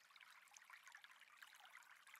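Near silence, with a faint steady background of trickling water.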